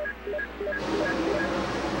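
NASCAR Cup car's V8 engine heard through the onboard camera during practice, getting louder about a second in.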